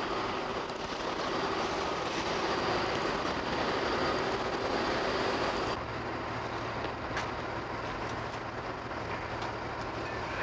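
Steady outdoor background noise with no distinct events. About six seconds in it changes abruptly to a quieter, steady low hum.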